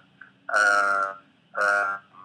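A man's voice over a Skype video call: two drawn-out, hesitant syllables, the first about half a second in and the second near the end.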